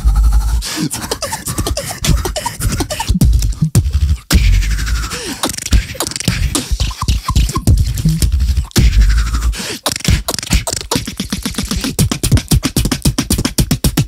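Two beatboxers performing a tag-team routine into handheld microphones: a heavy deep bass hit about every four seconds, with pitched, gliding vocal sounds in between. It turns into a fast string of sharp clicks and snares in the last few seconds.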